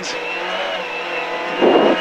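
Mk2 Ford Escort rally car's Pinto 8-valve four-cylinder engine running hard under load, heard from inside the cabin, with a steady high whine over it. A short rush of noise comes near the end.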